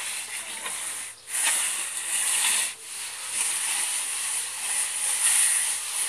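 Rough hissing scrape of a long straightedge being drawn across cement render on a wall, in long continuous strokes broken by two short pauses near the start.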